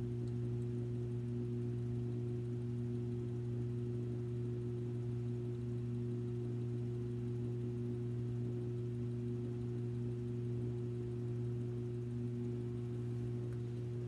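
Electric potter's wheel motor humming steadily as the wheel turns, a low, unchanging hum.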